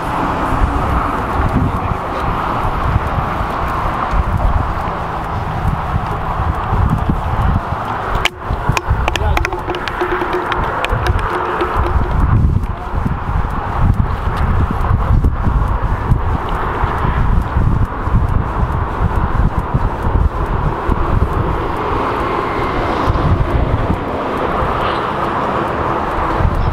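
Strong wind buffeting the microphone, with a run of quick clicks from about eight seconds in as a spinning reel is wound while a fish is being fought on a bent rod.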